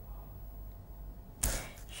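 Faint low hum, then a short whoosh about one and a half seconds in that fades quickly.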